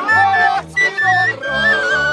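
Polish highland folk band playing: a wooden fujarka shepherd's pipe carries a high, trilled melody over fiddles, accordion and a bowed double bass keeping a steady stepping bass line.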